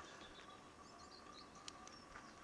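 Near silence: faint outdoor background with a few faint, high bird chirps and a faint steady hum.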